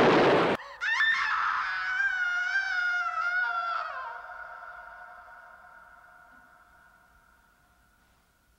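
A loud crash cuts off suddenly about half a second in. Then a woman's long, high, wavering scream rings out and trails off into an echo that fades away over several seconds.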